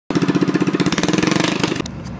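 Small single-cylinder go-kart engine running, with a rapid, even putter that rises slightly in pitch before cutting off suddenly just before the end.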